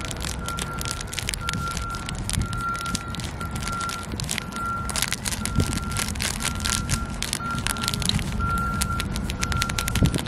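Crinkling of a small plastic zip-lock bag of glitter being handled and squeezed, a dense run of irregular small crackles, over a low wind rumble on the microphone.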